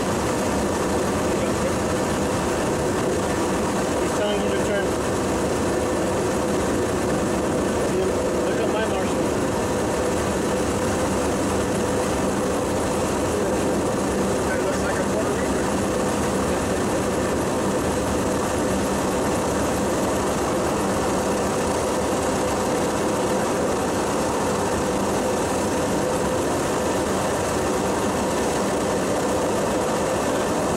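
Douglas DC-7's radial piston engines running steadily at low power while the aircraft taxis, heard from inside the cockpit.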